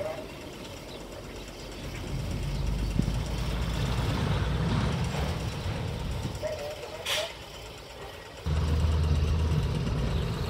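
A locomotive's engine running during wagon shunting, its low rumble building from about two seconds in. A short hiss of air comes just after seven seconds, and the engine note steps up sharply about eight and a half seconds in.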